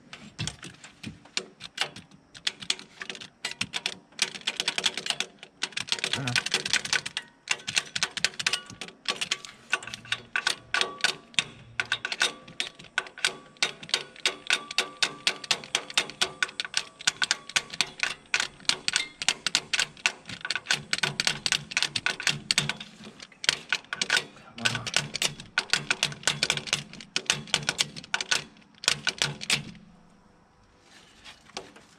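Ratchet wrench clicking as it is swung back and forth to back off exhaust manifold nuts. The clicks come in quick runs, settling into a steady rhythm of about two strokes a second in the second half.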